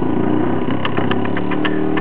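Small homemade Newman motor, a permanent-magnet rotor spinning inside a wire coil, running free with no load at high speed on about 4 volts. It gives a steady whirring hum with faint clicks.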